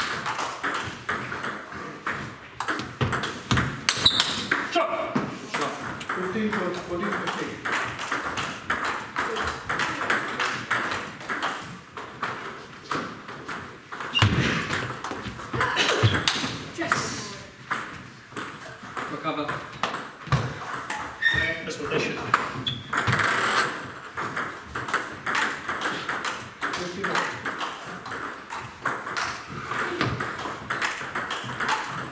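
Table tennis balls clicking off bats and bouncing on the tables in quick back-and-forth rallies, with voices talking in the background.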